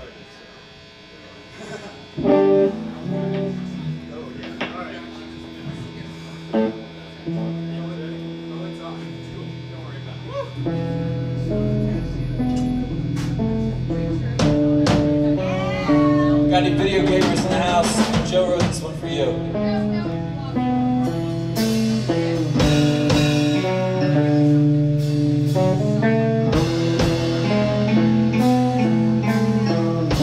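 A live rock band starting a song: electric guitar notes enter a couple of seconds in, a bass line joins around ten seconds, and the band builds up with drums to full playing over the second half.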